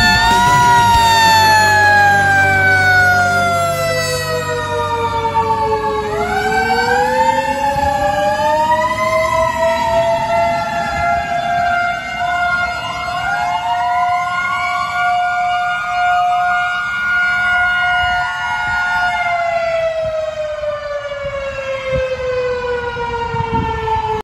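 Fire company emergency truck leaving the station under sirens. The wail slides slowly down, then warbles up and down faster before settling back into long rising and falling wails, over a steady siren tone. A diesel engine rumbles in the first few seconds as the truck pulls out.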